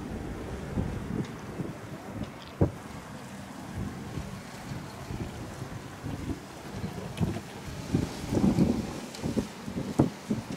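Wind rumbling on the microphone, with scattered distant pops and bangs. One sharp bang comes about two and a half seconds in, and a cluster of them near the end.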